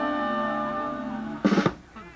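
Live band holding a final sustained chord of several steady notes that slowly fades, then a short loud crash about one and a half seconds in that ends the song.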